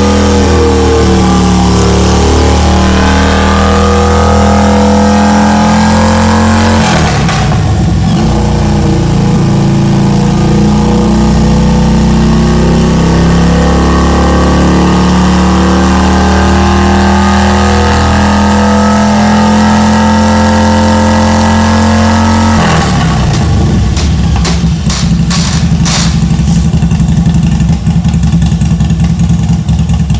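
2006 Harley-Davidson Road King Custom's Twin Cam 88 V-twin running steadily under test. Its note changes about seven seconds in and again about three-quarters of the way through, followed by a run of sharp pops near the end.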